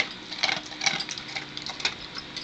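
A large dog eating from its food bowl: irregular crisp clicks and crunches of chewing and of food against the bowl.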